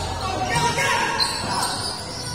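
Sounds of a basketball game in play: voices calling out on and around the court, over the players' footsteps and the ball on the court floor.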